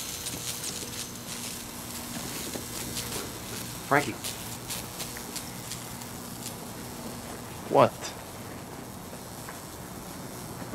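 Quiet background with a faint steady low hum that fades out about seven seconds in, and a few light scattered clicks and scuffs.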